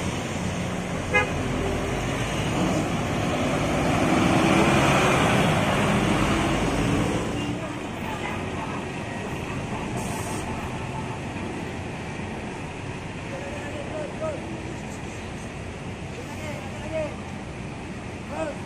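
Volvo B11R coach's diesel engine running close by, growing louder over the first few seconds and dropping away after about seven seconds. A short horn toot sounds about a second in, and the rest is quieter traffic noise.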